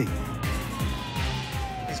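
Police car siren on a slow wail, one long fall in pitch that turns to rise again at the very end, under a music bed.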